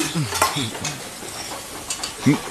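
Restaurant kitchen sounds: food sizzling in a pan with clicks and clinks of utensils, busiest in the first second.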